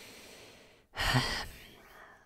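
A woman sighing: a quieter breath, then a long breathy sigh about a second in that trails off.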